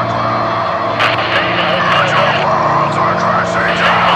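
A steady low droning hum with indistinct, unintelligible voices over it.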